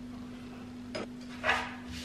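A glass reed diffuser set down on a shelf: a light click about a second in, then a softer second sound shortly after, over a steady low hum.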